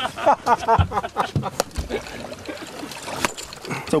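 Water sloshing and splashing against the side of a small boat's hull, with a few sharp knocks. Voices are heard in the first second.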